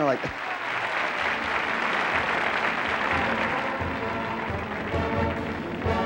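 Studio audience applauding. Band music with horns strikes up near the end.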